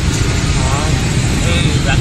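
Steady low rumble of city street traffic, with a voice speaking faintly twice over it.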